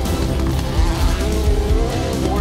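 Rally car engine running at speed on a tarmac stage, mixed with a steady music soundtrack.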